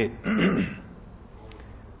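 A man clearing his throat once, briefly, near the start.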